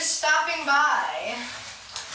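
A person speaking, words not made out, trailing off in the second half.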